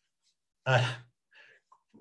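A man's short hesitant 'uh', followed by a faint breath.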